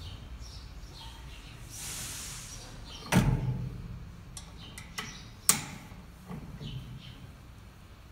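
Metal knocks and clicks from handling a bench-mounted hand-lever pellet press: a short rustle about two seconds in, a loud knock about three seconds in, then a few sharp clicks around the five-second mark.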